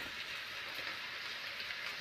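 Vegetables frying in oil in a frying pan, a steady even sizzle: a rice-and-vegetable mix of peas, corn and pepper freshly added on top of part-fried cabbage and onion.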